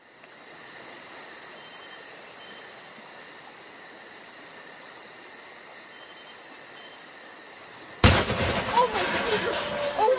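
A single loud explosion about eight seconds in: a sudden blast followed by a rumbling decay, with people shouting as it dies away. Before the blast there is only a faint steady hiss.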